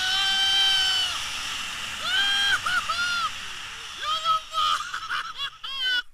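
A man's high-pitched, drawn-out yells of excitement, several long held calls and then quicker wavering ones, over steady wind hiss on the microphone.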